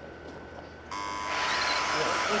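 About a second in, a steady start tone sounds for about a second, and a pack of 1/10 off-road RC cars pulls away at the same time. Their motors whine and their tyres hiss on the dirt, building up.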